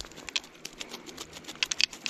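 Irregular light clicks and wet taps from a landing net holding a freshly caught brook trout, as the fish flops in the mesh at the water's surface. The taps bunch up near the end.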